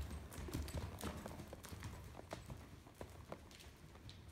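Hoofbeats of an APHA sorrel overo gelding moving under saddle on the soft dirt footing of an indoor arena: dull thuds with sharper knocks, several a second in an uneven rhythm.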